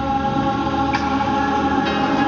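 Gospel choir music, the voices holding long sustained notes.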